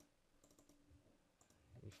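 Near silence: quiet room tone with a few faint, sparse clicks from the computer controls used to brush in Photoshop.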